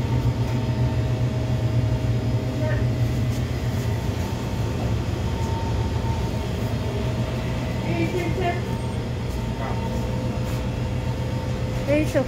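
Steady low hum of shop background noise, with faint snatches of distant voices now and then.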